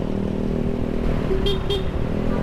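Motorcycle engine running steadily at low speed in traffic, with two short horn toots about one and a half seconds in.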